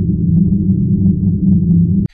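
Low, steady bass drone at the tail of a logo intro sting, loud and sustained, cutting off suddenly at the very end.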